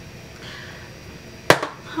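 A single sharp click, followed at once by a softer second click, from a small object being handled.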